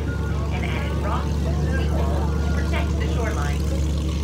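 Cruise boat's engine running with a steady low drone under voices of people talking.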